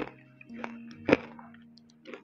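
A few short, sharp crunches and clicks of a spoonful of crunchy oat granola being bitten and chewed, the loudest just past the middle, over soft background music.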